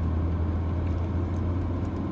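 Car engine running, heard from inside the cabin as a steady low hum.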